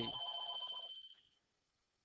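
A steady, high electronic beep with a lower, wavering electronic tone beneath it, both fading out a little over a second in; then the sound cuts off completely.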